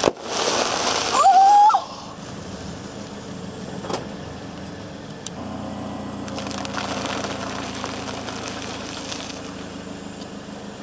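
A car tire rolls onto a plastic snack bag, which bursts with a sharp pop at the start, followed by a loud crinkling crush and a short high-pitched squeal. Then the car's engine idles steadily, with soft crinkling as the tire flattens a bag of popcorn.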